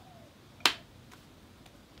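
A single sharp snap about two-thirds of a second in, followed by a few faint ticks over a quiet background.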